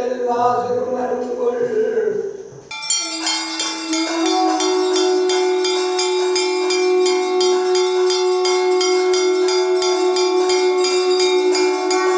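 Devotional chanting for the first few seconds. It gives way suddenly to rapid, even bell ringing, about four strokes a second, over a loud, steady held tone, the usual din of an arati lamp offering at a Hindu temple shrine.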